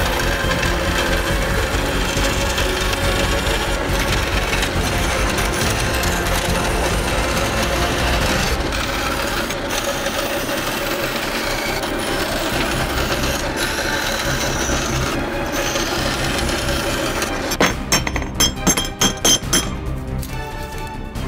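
Background music over a band saw cutting a flange shape out of steel bar stock, with the rasp of the blade through the metal. A quick run of sharp clicks comes near the end.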